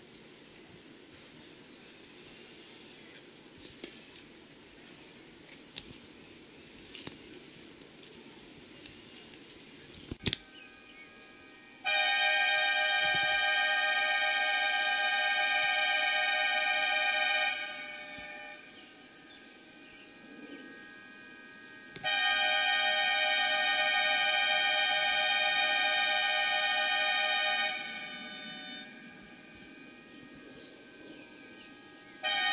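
Two long blasts of a golf course's weather warning horn, each a steady tone of about five and a half seconds, about ten seconds apart, signalling that play is resuming after a lightning delay. A sharp click comes shortly before the first blast.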